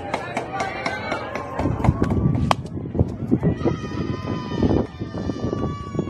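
Spectators and players shouting and cheering at a softball game, with a single sharp crack of an aluminium bat hitting the softball about two and a half seconds in. After the hit the voices turn into long, drawn-out shouts as the runners go.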